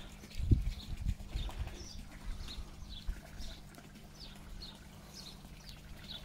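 A small bird gives a series of short, high, falling chirps, about two a second, over the steady low hum of a garden pond pump. A few low thumps come in the first second and a half.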